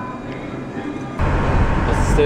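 Quiet restaurant room tone, then, about a second in, an abrupt change to the steady low rumble of road and tyre noise heard inside a moving car's cabin on a wet road.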